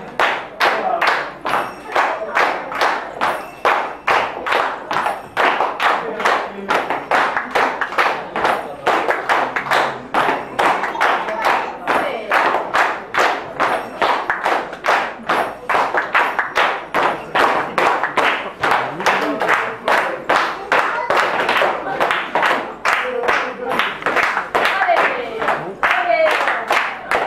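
Flamenco palmas: a group of people clapping their hands together in a steady rhythm, about three claps a second, with voices calling out over it.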